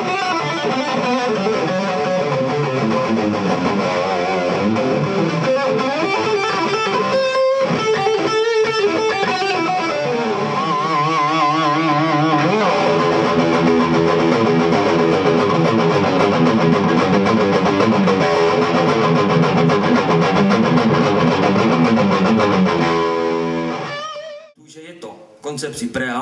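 Gibson Les Paul Standard electric guitar played through an AMT tube preamp and an Egnater amplifier: a continuous lead line with a held note and vibrato about halfway. The playing stops a couple of seconds before the end, and a man starts talking.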